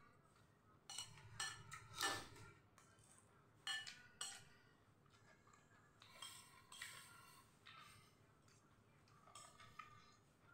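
Metal spoon clinking and scraping against a ceramic noodle bowl during eating, as faint sharp clinks: a cluster about a second in, two more near four seconds, and a rougher scrape around six to seven seconds.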